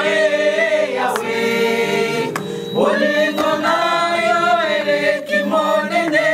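A group of women singing a worship song together, holding long notes, with a short break between phrases a little over two seconds in.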